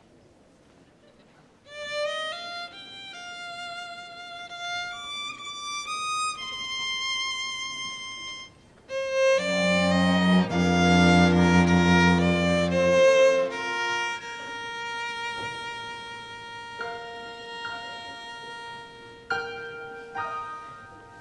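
Violin playing a slow hymn melody in long held notes, starting about two seconds in, with a louder, fuller low accompaniment swelling in around the middle.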